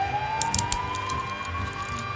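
Police car siren in a slow wail, its pitch rising steadily, with a few faint clicks about half a second in.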